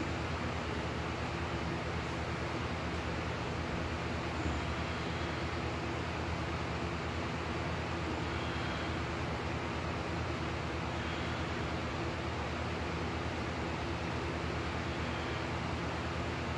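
Steady low hum with hiss, unchanging throughout, with a faint knock about four and a half seconds in.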